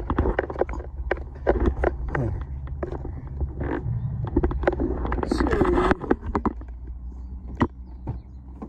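Irregular footsteps and knocks from the phone being handled while walking beside a parked car, over a steady low hum. A brief spoken word about five seconds in.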